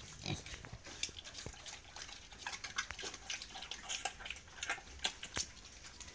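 Pigs feeding on watermelon and other food scraps off a concrete floor: irregular wet smacking and chomping, with a few sharper clicks.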